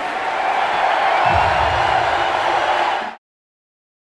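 Large crowd applauding and cheering, steady and loud, cutting off suddenly about three seconds in.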